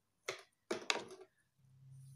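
A few short rustling swishes of long straightened hair being handled and flicked with the fingers, once about a quarter second in and twice around a second in. A faint low hum comes in near the end.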